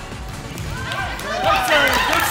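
High-pitched young voices yelling and cheering together in a gym during volleyball play. They swell to their loudest near the end, with music underneath.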